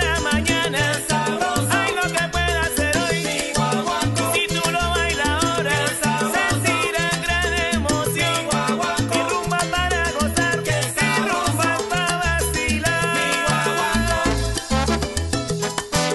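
Salsa music in guaguancó style: a recorded band with a repeating bass line, dense percussion strikes and melodic instrument lines above them.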